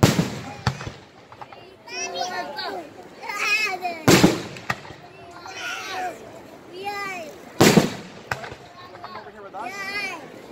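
Aerial fireworks going off: a run of sharp bangs, the loudest about four seconds in and just before eight seconds, with voices around them.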